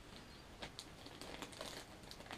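Faint crinkling and light irregular clicks of plastic model-kit sprues and their clear plastic packaging being handled.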